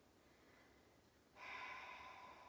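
Near silence, then about a second and a half in a woman's long, audible breath out, like a sigh.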